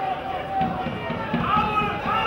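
Speech: a voice talking continuously over a football match broadcast, with outdoor background noise.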